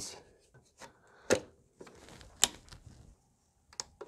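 Sharp plastic clicks and taps from the mass air flow sensor and its housing being fitted back together and set into the intake: three clicks about a second apart, the last a quick double, with faint handling noise between.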